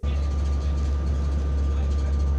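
Steady road noise inside a moving car: a deep, even rumble with a faint steady whine above it.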